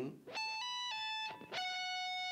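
Electric guitar playing a hammer-on and pull-off high on the neck, the pitch stepping up and back down. A single note is then picked and held steady from about one and a half seconds in.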